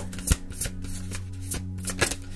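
Tarot cards being shuffled and handled by hand: a run of quick, irregular card clicks, the loudest about a third of a second in, over soft background music with a steady low drone.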